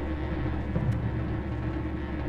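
Symphony orchestra in a low, rumbling passage: deep sustained notes with drum strokes over them, in an old 1947 recording.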